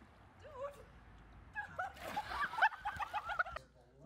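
A high-pitched human voice making a string of short, wordless cries that rise and fall, starting about one and a half seconds in and cutting off abruptly just before the end.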